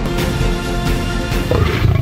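Trailer music with held tones; about one and a half seconds in, a young lion roars over it, the loudest sound here.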